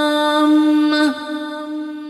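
A man's voice chanting an Arabic supplication in melodic recitation, holding one long steady note. The note drops away about a second in, and a fainter steady tone lingers after it.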